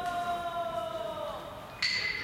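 A sumo referee (gyoji) calling a wrestler's name in a long, drawn-out chant, holding one note that slides down and fades away about one and a half seconds in. Another voice starts just before the end.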